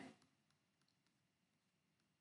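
Near silence: room tone, with a few very faint clicks.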